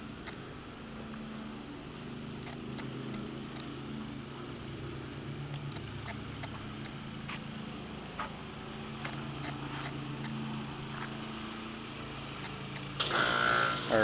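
A steady low mechanical hum made of a few held tones, with a few faint short high sounds over it.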